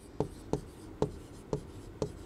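Pen or chalk writing on a board: four short, sharp taps and strokes, about half a second apart.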